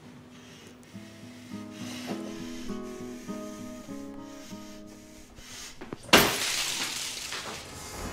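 Film score: soft plucked notes in a slow, stepping line, then about six seconds in a sudden loud burst of noise that fades away over about two seconds.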